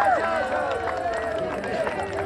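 High-pitched women's voices singing, one long note held and slowly falling, over crowd noise.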